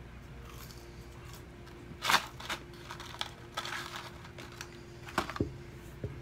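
Cardboard fry box and paper food packaging handled while eating: scattered short crinkles and clicks, the loudest a brief rustle about two seconds in and a pair of clicks near the end, over a faint steady hum.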